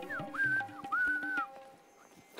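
A person whistling a short phrase: a quick downward slide, then two held notes, over soft background music that stops about a second and a half in.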